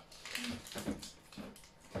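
Quiet crinkling of a foil toy blind-bag wrapper being handled, with small scattered taps and a few brief soft vocal sounds.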